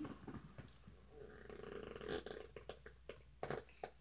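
Beanbag chair squeaking and rustling as a person sinks down into it, with a faint, drawn-out fart-like rasp about one to three seconds in and a few small clicks near the end.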